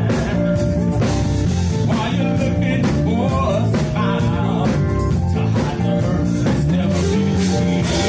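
Live gospel music: a men's vocal group singing into microphones over a band with electric guitar and drums keeping a steady beat.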